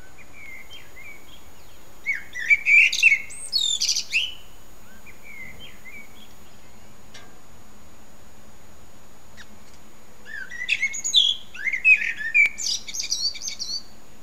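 A songbird singing two loud, varied warbling phrases: one about two seconds in and one about ten seconds in, each lasting two to three seconds. A few softer short notes come in between.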